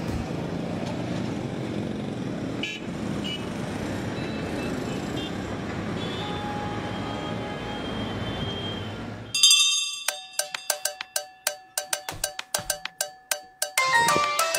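Roadside traffic noise with a faint vehicle horn toot. About two-thirds of the way through it cuts off abruptly and a plucked, marimba-like melody of short repeated notes begins.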